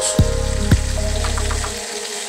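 Water spinach sizzling in hot oil in a frying pan as it is pressed down, under background music with a steady beat.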